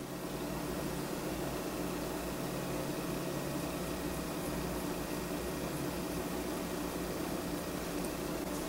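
Steady hiss with a low mechanical hum: room tone.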